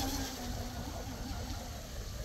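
Distant RC twin-hull catamaran's Rocket 2948 3450kv brushless motor whining faintly while the boat takes a medium-speed turn, its pitch wavering, over a low rumble.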